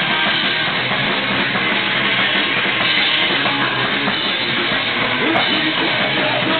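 A punk rock band playing live: electric guitar over a drum kit, loud and unbroken.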